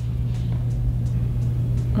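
A steady low hum, unchanging throughout, with no other clear event.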